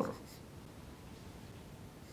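Faint scratching of a marker pen writing on a whiteboard.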